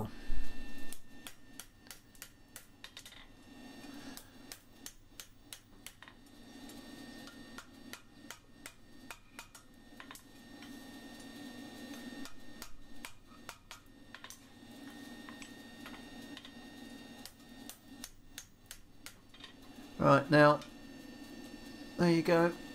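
Hand hammer on a steel horseshoe at the anvil: one heavier strike at the start, then many light taps at irregular spacing, over a low steady hum.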